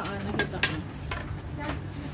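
Things being handled at a table crowded with plastic bags: four short crinkles and clicks spread over two seconds, over a steady low hum.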